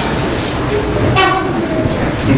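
Several people talking at once in a meeting hall, with one voice rising above the rest just past the middle, over a steady low rumble.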